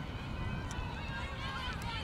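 Several distant women's voices calling and shouting at once, indistinct, over a steady low rumble.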